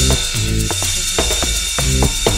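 Electronic dance track in a dub mix: a steady kick-drum beat and bass line under a bright, sustained hiss of noise that washes in just before this point, with clicky rhythmic percussion on top.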